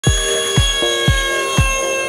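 Electronic dance music with a steady kick-drum beat, about two beats a second, over held high synth tones.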